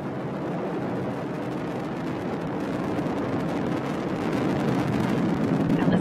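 Roar of an Atlas V rocket in powered ascent, its RD-180 main engine and two solid rocket boosters firing. A steady low rumble with a crackle, growing gradually louder toward the end.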